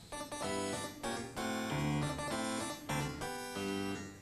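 Harpsichord playing a short, catchy tune: a melody of plucked notes over a changing bass line.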